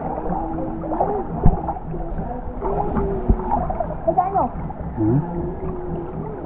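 Shallow stream water running and gurgling over rocks close to the microphone, with wavering, gliding low tones in the water noise and two dull thumps, about one and a half and three seconds in.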